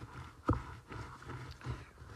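A metal spoon stirring rolled oats into a stiff cookie dough in a mixing bowl, with one sharp knock against the bowl about half a second in and a few softer taps after it.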